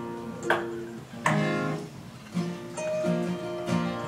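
Acoustic guitars played live: about five separate picked chords or notes, each left to ring before the next, changing in pitch.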